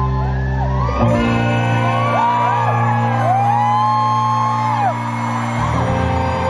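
Rock band playing live in an arena: a woman's voice sings long held, gliding notes over sustained chords that change about a second in and again near the end, with shouts and whoops from the crowd.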